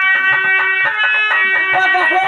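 Live Indian folk dance music: a held, reedy melody over steady, regular hand-drum strokes.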